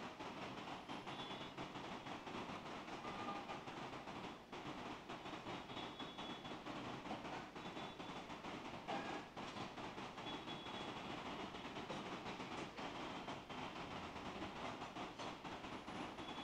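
Faint, steady background noise of a room, an even hiss and rumble, with a few soft clicks.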